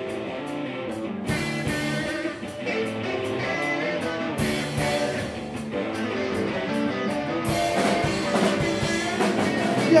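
Live rock band playing: amplified electric guitars holding chords over a drum kit with regular cymbal and drum hits. A singer's voice comes in right at the end.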